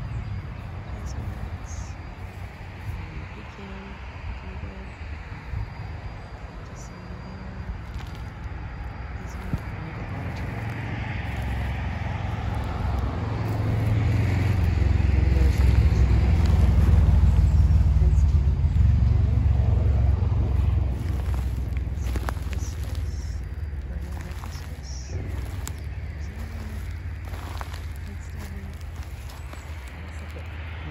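A car passing on the nearby street, its rumble swelling over several seconds to a peak a little past halfway and then fading away, over a steady low rumble.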